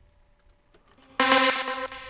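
A synthesized musical note from a sample played back through Ableton Live's Filter Delay. It starts suddenly about a second in as a steady pitched tone with many overtones, then fades near the end.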